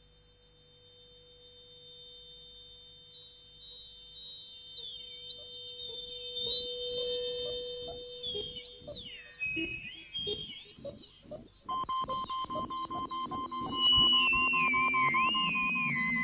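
Electronic music made from acoustic feedback (Larsen effect) howl tones: a high and a mid steady whine fade in, then warbling, gliding whistles and a quickening pulse join in as it grows louder. Near the end a new steady mid-pitched tone enters and a loud high tone takes over.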